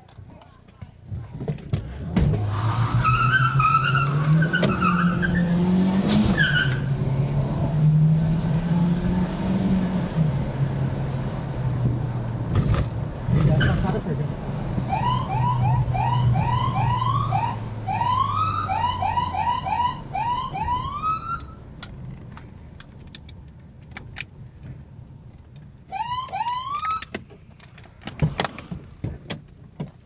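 Car engine accelerating hard, its pitch climbing and dropping through the gears. Then a police siren gives a rapid series of short rising whoops for several seconds, and again briefly near the end, signalling the car ahead to pull over.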